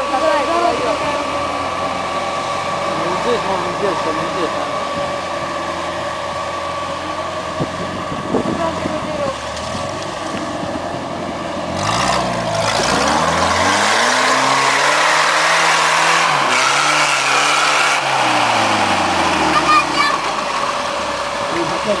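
Off-road jeep's engine pulling under load up a steep dirt climb. About halfway through it is revved hard for several seconds, the pitch rising, holding, then falling back down.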